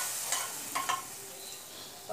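Hot ghee with fried cashews sizzling as a spoon scrapes it from a small pan into carrot payasam, with a few sharp metal clicks of the spoon against the pan. The sizzle dies away over the two seconds.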